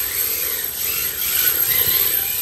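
RC drift car running on a wooden floor: a steady whirring from its motor and belt drive, mixed with the rasp of its tyres sliding across the boards as it drifts.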